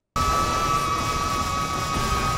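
Anime soundtrack sound effect: a dense rumbling noise with a high, steady ringing tone held over it, cutting in suddenly just after the start.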